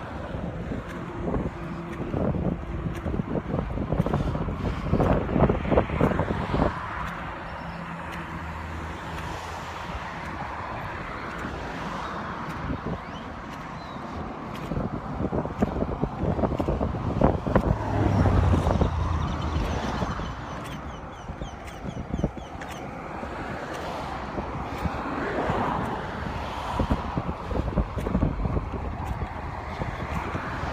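Road traffic on a street alongside, with several cars passing, loudest about five seconds in and again around eighteen seconds, over wind on the microphone.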